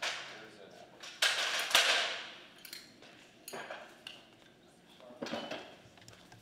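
Clattering and clinking of hard objects being handled, a few separate knocks with the loudest, longest clatter about a second in.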